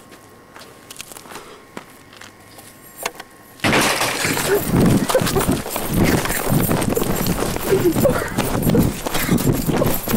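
Camcorder handling noise: a few seconds of quiet with faint clicks, then a sudden loud burst of rubbing and knocking as the camera is pressed against cloth or another surface. Muffled voices come through under it.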